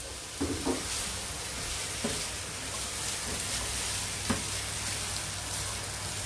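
Stir-fry of onion, pork, prawns and carrots sizzling steadily in a frying pan on full heat while a spatula stirs it, with a few short knocks of the spatula against the pan.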